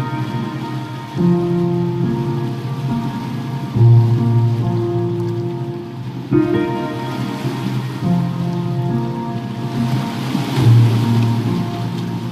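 Slow piano music with a new chord every two to three seconds, over a steady background of crackling fireplace fire and ocean waves.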